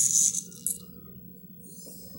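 Two short bursts of scratchy rustling near the start, the first about half a second long and the loudest, the second brief: a hand brushing against the phone close to its microphone.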